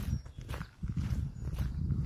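Footsteps walking through tall pasture grass, a few steps about a second apart, over a low, uneven rumble.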